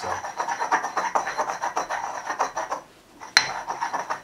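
Stone pestle grinding in a stone mortar full of wet, gooey hand-sanitizer paste: a quick run of rough scraping strokes, rock against rock. The grinding stops about three seconds in, followed by one sharp click.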